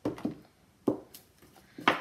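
Clear acrylic stamp block tapped against an ink pad to ink the stamp: several short, sharp taps spread over two seconds.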